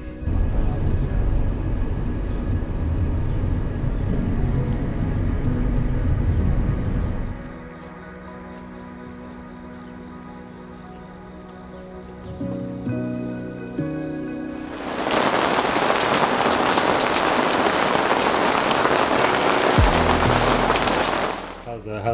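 Background music with held chords, over a low rumble for the first seven seconds or so. About fifteen seconds in, the dense steady hiss of heavy rain comes in and cuts off suddenly near the end.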